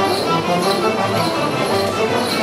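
A live band playing a traditional Catalan dance tune, several wind instruments over a steady beat.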